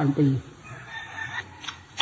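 A faint, drawn-out call from a bird in the background, lasting under a second, heard in a pause between a man's words.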